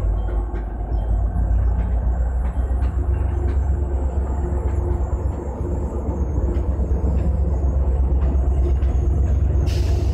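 Commuter train passing close by: bilevel coaches rolling past with a deep rumble and faint wheel ticks, then the EMD F40PH diesel locomotive's engine rumbling louder in the second half. A brief hiss near the end.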